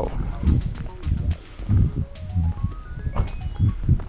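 Footsteps on gravel, a low thud about every two-thirds of a second, with a rising run of short pitched notes in the second half.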